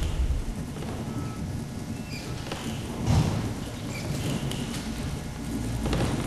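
Room noise picked up by a podium microphone in a meeting chamber: a low rumble with scattered rustles and soft bumps, and a louder bump about three seconds in.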